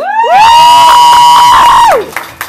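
One person's loud cheering yell close to the microphone as the song ends: it rises in pitch, is held high for about a second and a half, then drops away.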